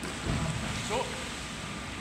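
Steady wash of water in an indoor swimming pool, stirred by swimmers floating beside a life raft.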